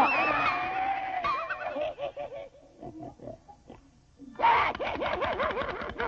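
Cartoon animal cries, squealing and grunting, pig-like: wavering pitched calls for the first two seconds, a near-quiet gap in the middle, then a fast run of short rising-and-falling squeals, about four a second, from just past four seconds in.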